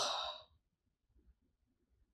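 A woman's breathy sigh trailing off from a spoken "wow", fading out within the first half-second, then near silence.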